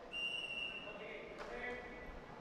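A referee's whistle blown once, a steady shrill blast of just under a second, signalling the change of possession and the start of a new shot clock. A sharp click follows about a second and a half in, over voices in the hall.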